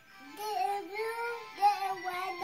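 A high, childlike singing voice carrying a tune, with faint music behind it.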